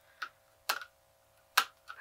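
Three light, sharp clicks, unevenly spaced, as an eyeshadow palette is handled and fingernails pick at a sticker on it.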